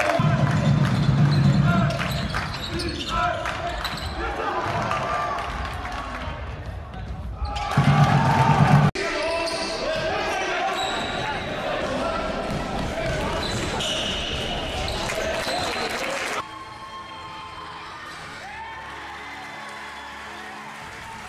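Live basketball game audio in an indoor gym: the ball bouncing on the court amid the voices of spectators and players. The sound changes abruptly about 8 and 16 seconds in as one game clip cuts to the next.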